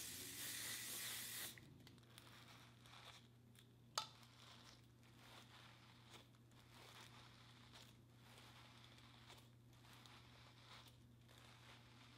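A short hiss of aerosol hairspray lasting about a second and a half, then faint, repeated strokes of a bristle paddle brush smoothing hair back, with one sharp click about four seconds in.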